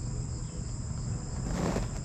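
Steady, high-pitched chirring of insects, with a low steady hum beneath it and a brief breathy rush near the end.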